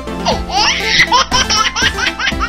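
A small child laughing in a quick run of short rising notes, over background music.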